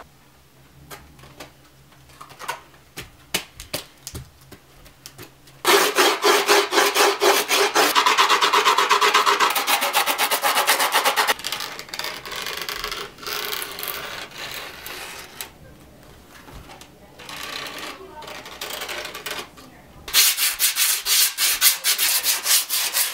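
Grip tape being put on a skateboard deck: quiet handling and small clicks at first, then rapid scraping and rubbing strokes over the gritty grip tape, loudest from about six to eleven seconds in and again near the end.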